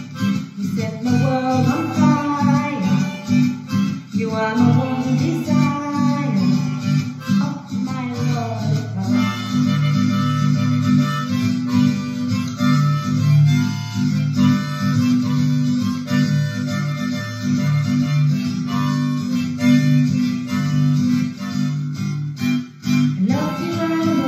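A harmonica plays a solo of held notes over a strummed acoustic guitar and bass accompaniment. A woman sings for the first several seconds and comes back in just before the end.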